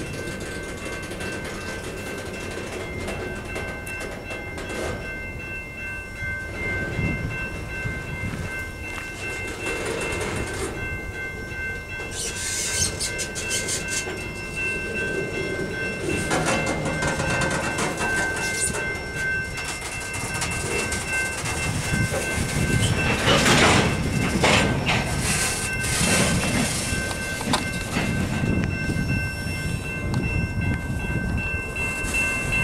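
Freight train covered hopper cars rolling past, their wheels rumbling and clattering over the rail joints, louder about midway and again near the end as the last cars go by. A level-crossing warning bell rings steadily throughout.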